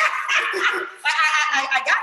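Loud, high-pitched laughter from women, running on without a break.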